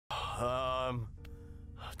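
Radio static crackling, with a man's short spoken word just before the one-second mark. After it comes a quieter stretch with a faint steady tone and a single click.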